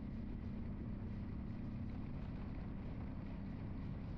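Vehicle driving along a paved road: a steady low engine and road rumble with some wind noise.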